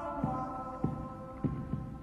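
Background music: held tones that slide down in pitch near the start, over a low thumping beat a little under twice a second.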